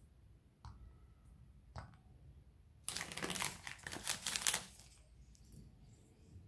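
Chocolate bar wrapper crinkling loudly for about two seconds in the middle, as a bar is pulled from its wrapper. Before it, two light clicks.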